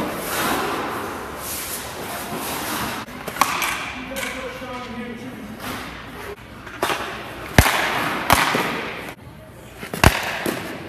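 Hockey goalie's skates and pads scraping across the ice as he moves around the crease. Two sharp cracks, less than a second apart, come near the end.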